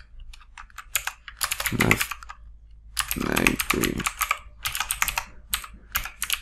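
Typing on a computer keyboard: quick keystrokes in short runs with brief pauses between them.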